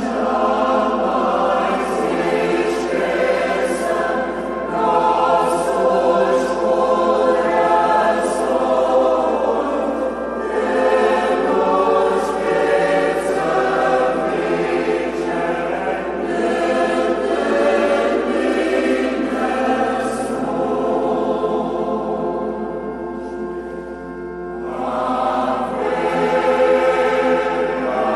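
Choir singing sacred music in continuous phrases, with brief breaks between phrases, over a steady low hum.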